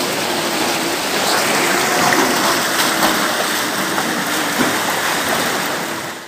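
Floodwater rushing fast and steadily down a narrow alley.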